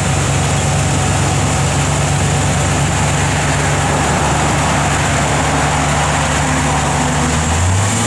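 A 350 cubic-inch small-block V8 with a four-barrel carburettor, in a 1956 Chevrolet 3100 pickup, idling steadily.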